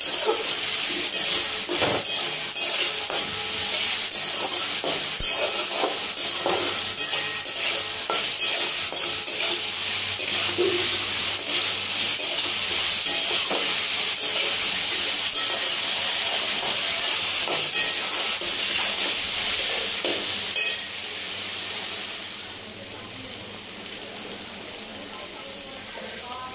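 Potatoes, green peas and spring-onion stalks sizzling in oil in a metal kadai while a steel spatula stirs and scrapes them against the pan. The sizzle turns noticeably quieter about 21 seconds in.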